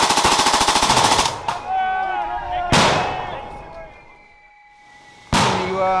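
Belt-fed machine gun firing a long, rapid burst of blank rounds in the first second or so, followed by shouting and a single loud shot partway through.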